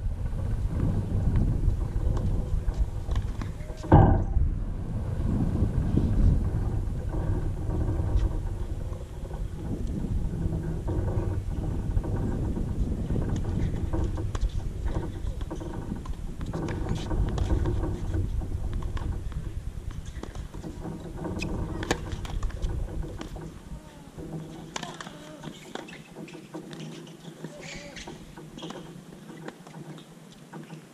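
Wind rumbling and buffeting on an outdoor camera microphone, with one sharp tennis racket-on-ball strike about four seconds in and a few faint clicks later. The wind rumble drops away about three-quarters of the way through.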